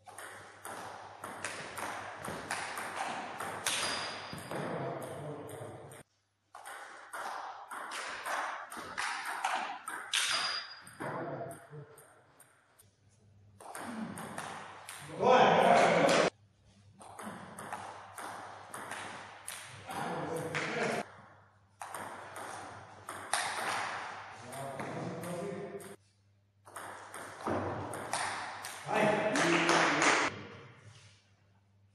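Table tennis rallies: the celluloid-type ball clicks off paddles and bounces on the table in quick runs, with short breaks between points. A loud voice breaks in about halfway through.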